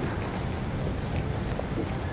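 Wind buffeting an action camera's microphone: a steady rumbling noise, heaviest in the low end.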